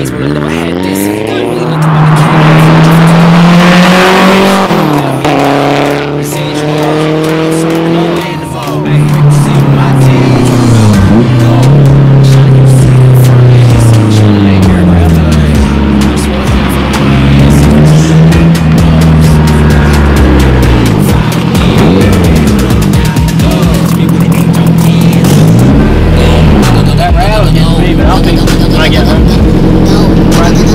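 Honda S2000's four-cylinder engine revving up and falling back again and again as the car is driven hard. Tires squeal for a couple of seconds near the start.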